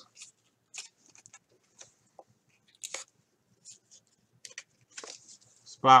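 Faint, scattered light clicks and rustles of a trading card being slid into a thin plastic sleeve and a rigid plastic top-loader holder.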